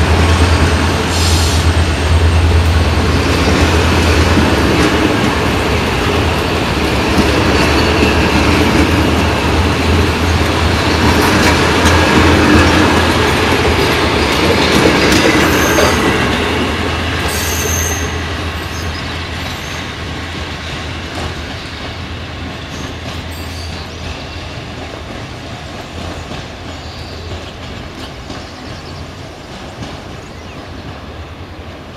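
Passenger train pulling away behind two diesel locomotives: a steady low engine drone with the rumble and clatter of the coaches' wheels over rail joints and points, and a little wheel squeal. It is loud for the first half, then fades steadily as the train draws off.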